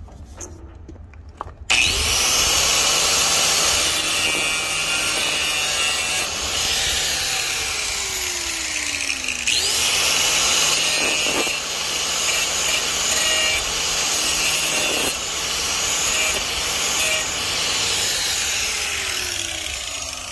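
Angle grinder with a thin cut-off disc starting up about two seconds in and cutting through a seized exhaust temperature sensor, metal on abrasive disc. The sensor's nut is too tight to turn with a wrench. About halfway the grinder spins up again and keeps cutting, then winds down near the end.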